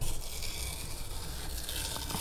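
Green painter's tape being peeled slowly off a model rocket's body tube and fins, a steady, even rustle. The tape is lifting away from epoxy fillets that are still tacky.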